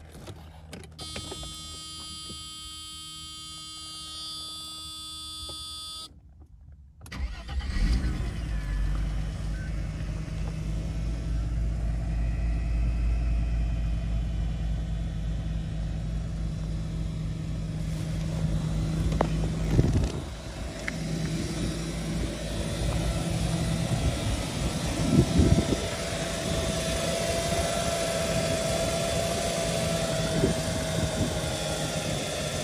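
A steady electrical buzz for a few seconds, then the Mercedes W140 S320's M104 3.2-litre straight-six engine starts with a loud surge and settles into a steady idle, with two brief louder knocks later on.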